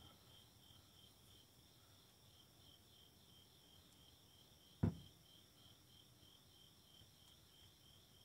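Near silence with crickets chirping faintly and steadily in the background, a high, evenly pulsing trill. A single knock about five seconds in.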